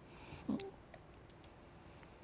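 A single short click with a brief low voice-like sound about half a second in, then a few faint clicks, over quiet room tone.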